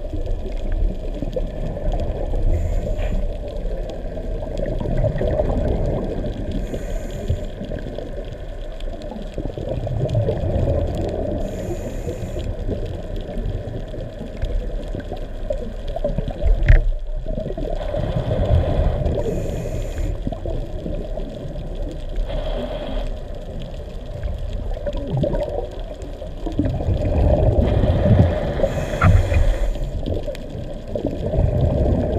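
Underwater sound picked up by a camera: a steady rush of water with gurgling and surging swells, and a short high hiss every several seconds.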